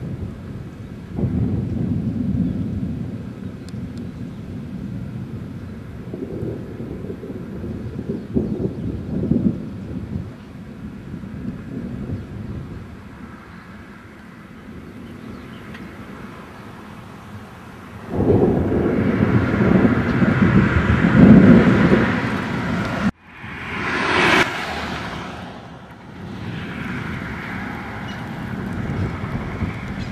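Thunder from a severe supercell rumbling in several long rolls. The loudest roll comes about two-thirds of the way through and cuts off suddenly. A brief rushing noise follows, then more low rumble.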